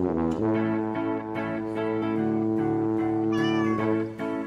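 Channel intro jingle music with steady held chords, and a cat meow sound effect near the end.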